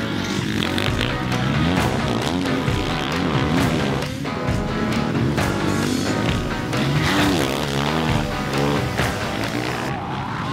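Kawasaki KX450 single-cylinder four-stroke motocross engine revving up and down over and over as the bike is ridden hard through corners, under background music.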